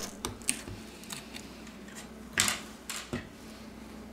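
Small plastic clicks and taps as a plastic pry tool levers a plastic protective cover out of a phone's frame, with a brief scraping rustle about two and a half seconds in.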